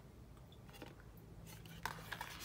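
Faint handling noise of a CD being held and slid back into a cardboard disc sleeve, with a few light clicks and rubs, the clearest near the end.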